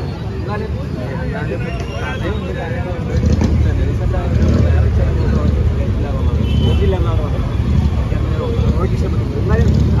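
Men talking face to face close to a handheld microphone outdoors, over a low steady rumble that grows louder about three seconds in.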